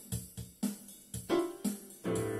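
Electronic arranger keyboard with its keys pressed at random: about half a dozen separate short notes in two seconds, each dying away quickly.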